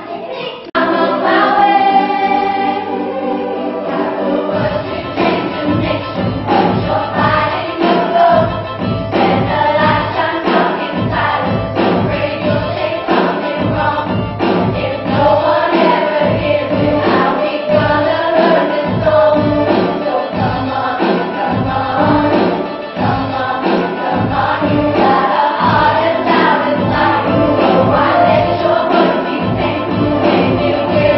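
A children's choir singing together over a backing track with a steady beat. There is a brief dip just after the start, then the music runs on without a break.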